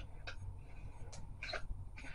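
Quiet room with a few faint, short clicks and rustles as a plastic eyeliner pencil and its packaging are handled.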